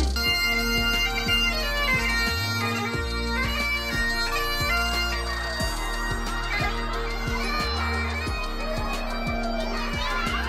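Bagpipes playing a tune over their steady drones.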